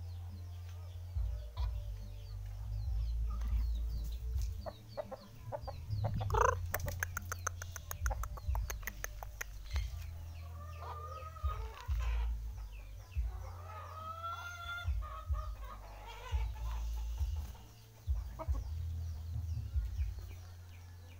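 A rooster clucking and calling as it walks, with a rapid run of clicks about six seconds in. Small birds chirp faintly in the background over a low rumble.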